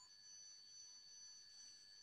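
Near silence: room tone with faint, steady high-pitched electronic tones.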